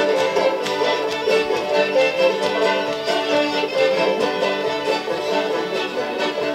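Acoustic string band playing an instrumental passage: two fiddles bowing the melody over banjo and strummed acoustic guitar, in a bluegrass, old-time style.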